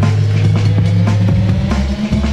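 Old skool hardcore rave music from a DJ mix: a heavy sustained bass note under drum hits, with a thin synth tone rising slowly in pitch.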